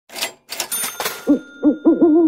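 Logo intro sound effect: two quick whooshes with a high ringing tone, then a run of short pitched notes that rise and fall, about three a second, the last one held.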